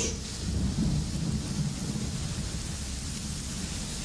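Steady rain with a low rumble of thunder.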